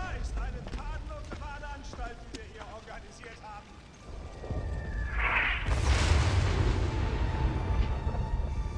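Distant dialogue, then a thin whistle falling slightly in pitch and a loud explosion about six seconds in, its deep rumble carrying on afterwards.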